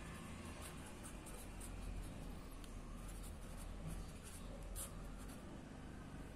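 A pen writing on paper held on a clipboard: faint scratching in short, irregular strokes.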